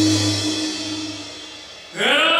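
Live band music holding a chord with cymbal shimmer, fading away steadily over about two seconds.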